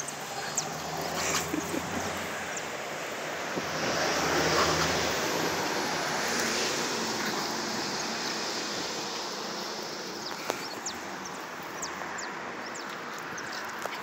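Wind noise on the microphone outdoors: a steady rushing haze that swells about four seconds in and then eases off, with a few faint ticks.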